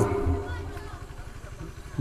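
A brief pause in a man's amplified speech over a public-address system: his last word fades away in the hall, leaving a faint low rumble and background noise.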